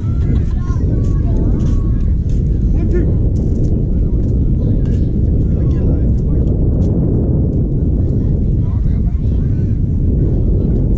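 Steady low rumble of wind buffeting the camera microphone, under distant voices and shouts from players and spectators.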